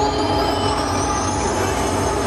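Hardstyle dance music played loud through a club sound system, with a steady low beat under a high synth sweep rising in pitch.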